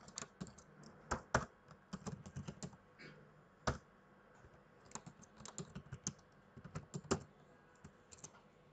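Computer keyboard typing: irregular runs of keystrokes, a few quick clicks at a time, with short pauses between the runs.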